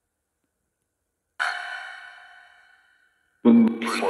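Two short, echoing voice-like sounds from a ghost-hunting app (Ovilus / Ghost Tube), about a second and a half in and again near the end, each cutting in suddenly out of dead silence and dying away in a long echo.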